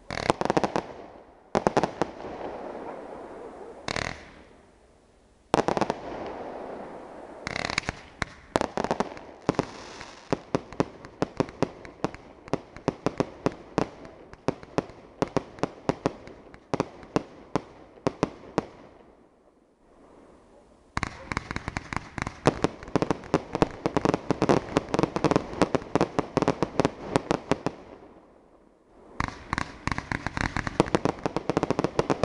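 Aerial fireworks firing and bursting: a few single loud reports a second or two apart, then a fast string of bangs. After a brief lull, a denser rapid barrage follows; it pauses again and resumes near the end.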